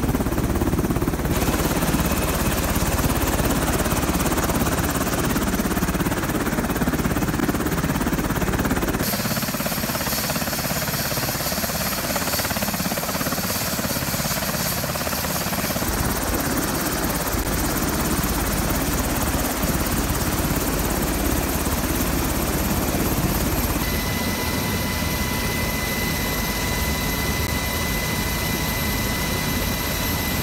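MH-60S Sea Hawk helicopter running on the ground: a loud, steady rotor and turbine-engine noise that changes abruptly several times, with a steady high whine over it in the last few seconds.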